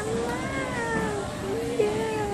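Baby vocalizing in two long, high-pitched wordless calls, the first gently falling in pitch, the second starting about a second and a half in.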